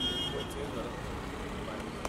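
Street background noise from idling and passing cars, with faint chatter from people nearby. A short, high electronic beep sounds at the very start.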